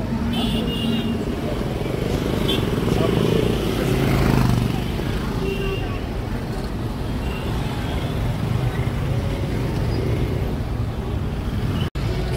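Street traffic heard from inside a moving car: a steady engine and road rumble with motorcycles and cars passing, and indistinct voices.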